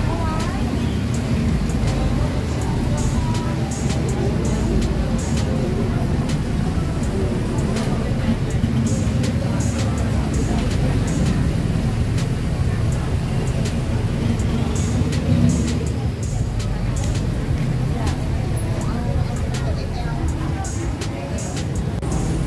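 Busy open-air market ambience: scattered voices of shoppers and vendors over a steady low rumble of road traffic, with some music playing.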